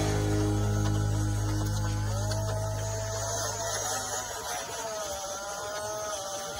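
A music track's last held chord fades away over the first few seconds, and under it the electric motor and gears of a 1/18 scale 6x6 RC crawler truck whine, the pitch wavering slightly as the truck crawls along.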